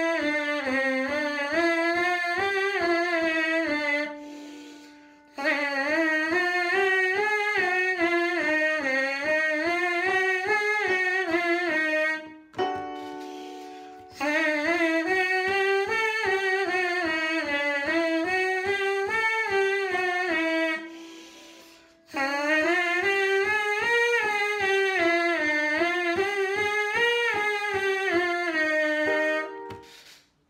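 A trumpet mouthpiece buzzed on its own, playing rapid tongued notes in four phrases whose pitch rises and falls in waves, with short breaks between the phrases. It is a tongue-technique exercise on the soft-attack syllables 'ti-khiy'.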